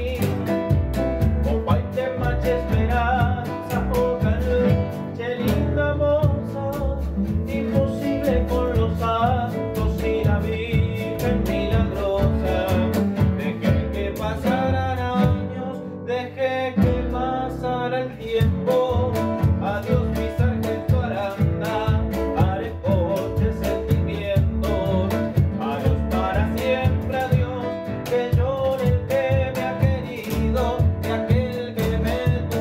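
Acoustic folk ensemble playing: two classical guitars and a double bass, with a man singing and a drum beaten with sticks keeping the beat. The music thins out briefly about halfway through.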